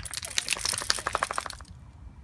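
French bulldog sniffing rapidly at close range: a quick run of short snuffles lasting about a second and a half, then stopping.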